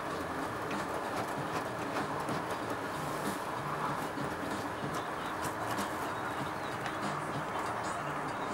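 Faint, steady outdoor hiss with a bird calling, most likely a pigeon cooing.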